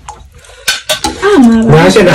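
Dishes and a metal spoon clinking on a table: a few sharp clinks about halfway in, then a voice comes in near the end.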